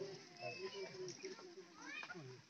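Faint voices of players and onlookers shouting and calling out across an open playing field, with one high call rising in pitch near the end.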